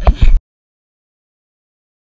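A short burst of loud, rumbling ride noise on a GoPro microphone that cuts off abruptly less than half a second in, followed by dead silence.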